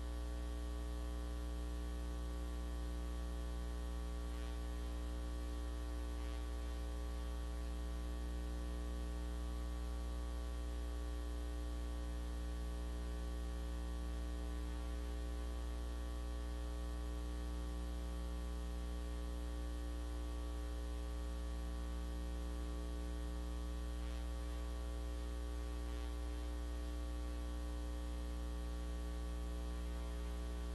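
Steady electrical mains hum in the audio feed: a low hum with a ladder of higher steady tones above it and a faint hiss, unchanging throughout.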